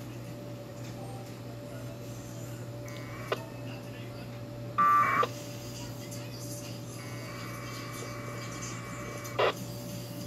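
1200-baud packet radio data tones from a two-meter transceiver's speaker. There is a brief burst about three seconds in, a louder short buzzy burst around five seconds, and a longer data burst of about two and a half seconds from about seven seconds in that ends in a sharp click. A steady low hum runs underneath.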